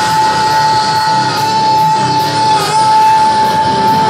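Rock band playing live, with one long high note held steady over the band and a slight waver about two and a half seconds in.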